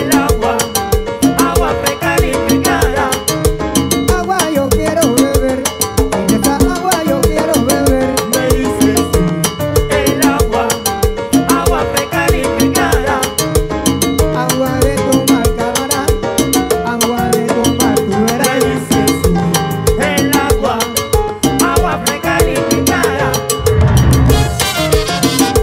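Salsa band playing live: a steady, driving rhythm of congas, timbales and güiro over keyboard piano and bass, with trumpets and trombones.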